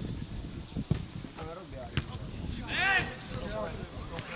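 Footballers shouting on an outdoor pitch, the loudest call about three seconds in, with two sharp thuds about one and two seconds in and a steady low rumble of wind on the microphone.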